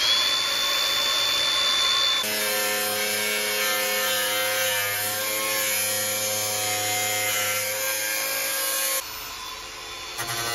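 Cordless angle grinder spinning up to a steady high whine, then cutting into the steel fender lip of a BMW E36 sedan, its sound changing abruptly about two seconds in. The sound drops away near the end.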